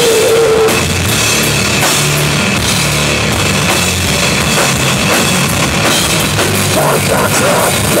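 Live sludge metal band playing at full volume: heavy, distorted low-end riffing over pounding drums and crashing cymbals. A shouted vocal comes in right at the end.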